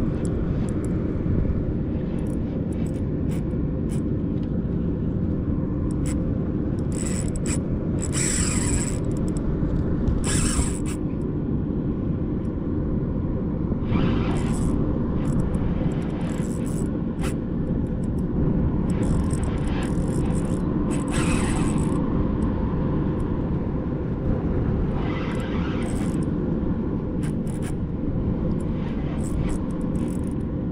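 Steady wind rumble buffeting the microphone over choppy water, with a few brief higher-pitched squeaks or hisses coming and going.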